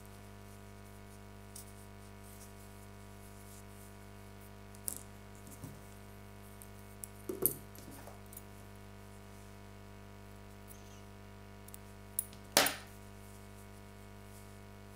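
Handling noise from a knitted piece and a metal tapestry needle on a wooden table: a few scattered small clicks and taps, the loudest near the end, over a steady low hum.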